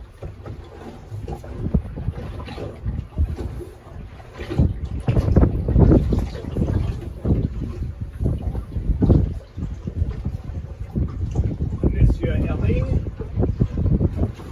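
Wind buffeting the microphone in irregular gusts aboard a small boat on choppy water.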